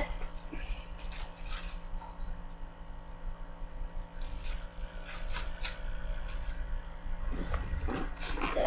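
Cardboard subscription box being opened: a few faint rustles and light taps of cardboard and paper, in two small clusters about a second in and around the middle, over a steady low electrical hum.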